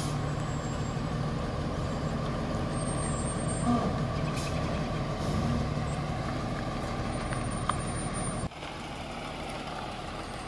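Large motorhome's engine running at low revs as the rig slowly backs up, a steady low hum. The sound drops suddenly about eight and a half seconds in.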